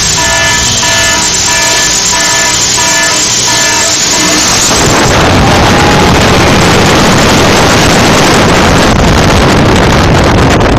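Repeated electronic tones pulsing about twice a second. About five seconds in, the Blue Fire coaster train launches along its track, and the sound turns into a loud rush of wind on the microphone and track noise as it speeds out of the tunnel.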